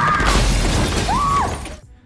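Movie sound effect: a window's glass shattering in a loud crash with a deep low rumble, dying away near the end.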